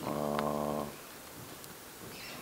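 A man's drawn-out hesitation sound, a hummed 'mmm' held on one low pitch for just under a second.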